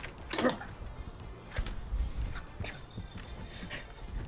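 A dog making short vocal noises while playing and pawing at a person, over faint background music.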